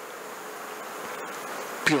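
Steady hiss of room noise in a pause between spoken phrases, with a man's voice starting again near the end.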